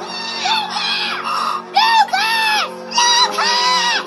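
A boy's voice shouting out a string of about five long, high calls in a row, over sustained background film music.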